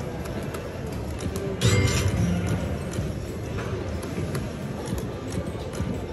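A video slot machine plays its electronic game music during a bonus round, over the steady background din of a casino floor.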